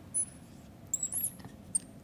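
Marker tip squeaking on a writing board as a formula is written: a few short, high-pitched squeaks, about a fifth of a second in, around one second in and again near the end.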